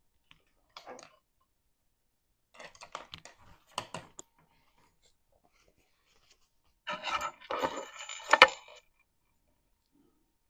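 Small craft supplies being handled: clicks and light rattling as a paintbrush is picked out and objects are moved about on the table. It comes in three short spells, the last and loudest about seven to nine seconds in, ending in a sharp click.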